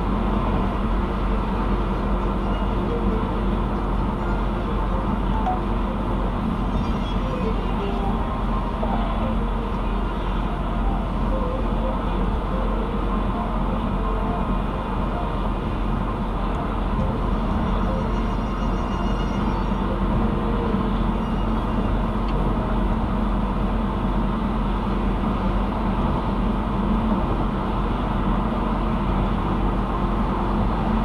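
Steady road noise heard inside a car's cabin at highway speed: tyres on the pavement with a low engine hum.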